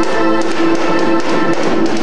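Live rock band in an instrumental passage: a sustained keyboard chord held under regular light cymbal ticks from the drums.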